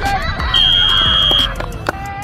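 A referee's whistle blown once in a single steady high note lasting about a second, as a play on a football field is stopped.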